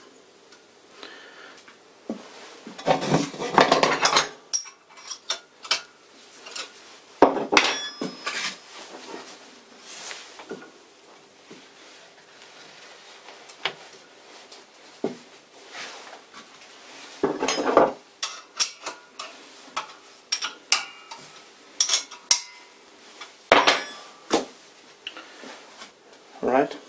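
Irregular metallic clunks and knocks from handling a vintage lathe's cast-iron cone pulley and V-belt drive, with a few louder clusters of clatter, over a faint steady hum.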